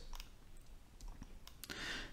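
A few faint, scattered clicks over quiet room tone.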